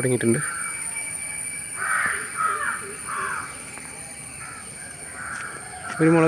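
A crow cawing outdoors, a short run of harsh caws about two seconds in.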